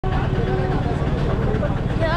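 Busy roadside noise: vehicle engines running with a low rumble under a babble of voices.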